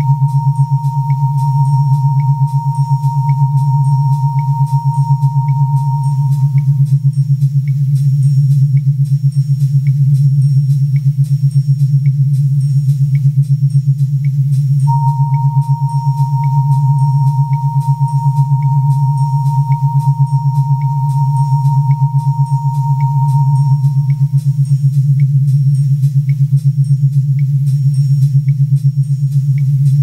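Synthesizer music with no drums: a loud, rapidly pulsing low synth drone under a high, pure synth tone that fades out, cuts back in suddenly about halfway through and fades again, with short high blips ticking at an even pace throughout.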